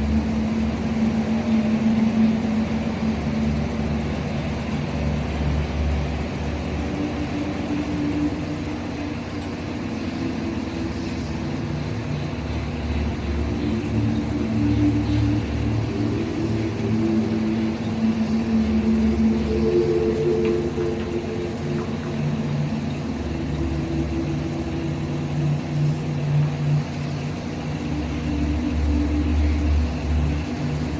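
Floating crane's deck machinery running loudly and continuously while the anchor is heaved up, with several engine tones shifting up and down in pitch over a low throb that comes and goes.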